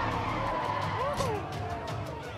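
Car tyres squealing in one long screech that sinks slowly in pitch, over the low rumble of engines, as cars do stunts at a street meetup.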